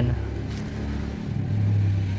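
Low, steady engine hum of a motor vehicle, growing a little louder in the second half.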